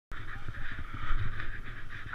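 Muffled wind and handling rumble on a helmet camera's microphone, with faint voices in the background.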